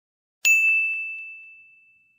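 A single bright chime strikes about half a second in and rings on one clear tone, fading away over about a second and a half, with a few faint tinkles just after the strike: the sound sting of an animated brand-logo reveal.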